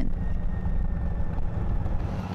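Steady low rumble of a motor vehicle running along the road, with a faint high whine held steady above it.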